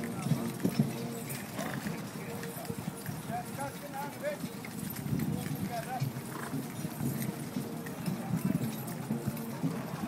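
Hoofbeats of a column of cavalry horses moving over grass: many irregular, overlapping thuds, with people's voices in the background.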